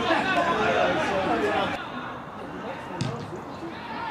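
Men's voices calling out across an outdoor football pitch, loudest in the first couple of seconds, then quieter, with a single sharp thump about three seconds in.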